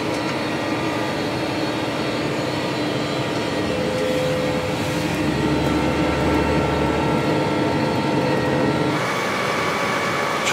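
Steady drone of a self-propelled crop sprayer heard from inside its cab while it drives and sprays fungicide with the boom out. The sound changes suddenly about nine seconds in.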